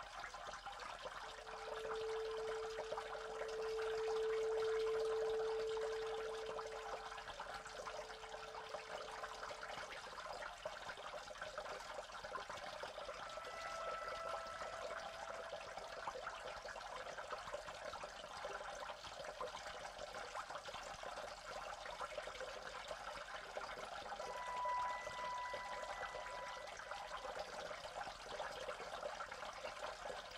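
Ambient electronic music built on a steady wash of trickling, running water. A few soft, long-held tones drift over it: a low one for the first several seconds, and higher ones around the middle and near the end.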